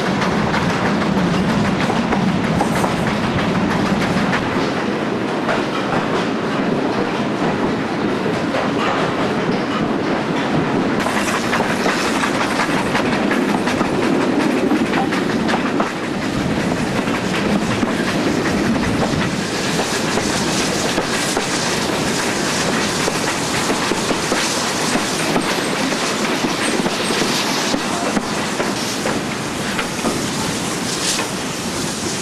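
Steam-hauled passenger train running along the line, heard from a carriage window: a steady rumble of the wheels on the rails, getting hissier partway through.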